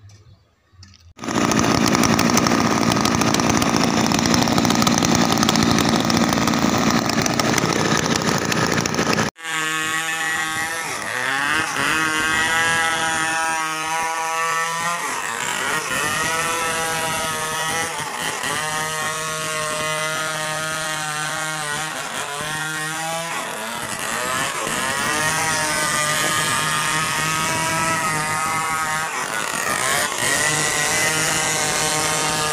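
Large two-stroke Stihl 070 chainsaw running hard. A loud steady noise sets in about a second in and breaks off suddenly about nine seconds in. After that, the engine note wavers up and down as the chain rips lengthwise along the grain of a big log.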